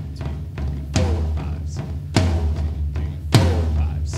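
Triggered floor tom and rack tom on a hybrid drum kit, four heavy hits about a second apart over a continuous low boom. The odd sound comes from faulty drum triggering, which the drummer blames for it sounding weird.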